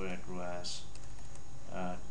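Keystrokes on a computer keyboard, over a steady low electrical hum.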